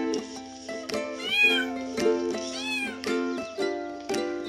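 A cat meowing twice, two short calls that rise and fall in pitch a little over a second apart, over plucked-string background music.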